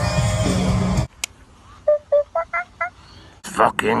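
A live rock band plays loudly and cuts off abruptly about a second in. Then come a faint click and a quick run of five short electronic beeps, like phone keypad tones, and a man's voice starts near the end.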